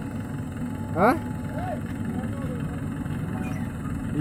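Mahindra 585 DI Sarpanch tractor's four-cylinder diesel engine idling steadily, a low even rumble.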